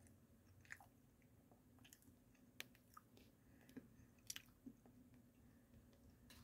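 Faint chewing of a Reese's peanut butter cup: a few soft, scattered mouth clicks over near silence.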